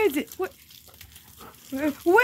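Garden hose spraying water onto a wet concrete driveway, a faint steady hiss. Short high yelping calls come right at the start and again near the end.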